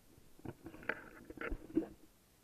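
Irregular rustles and knocks of handling right at an action camera's microphone as harness straps and clothing are worked on, with the strongest knocks in the second half.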